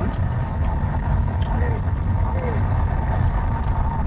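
Steady low rumble of a Mercedes-Benz car driving, heard from inside the cabin. Faint voices from a football broadcast on the radio sound during a gap in the commentary.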